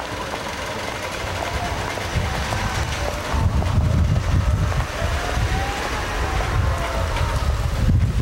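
Street traffic going by, with an uneven low rumble of wind on the microphone that grows stronger about three seconds in.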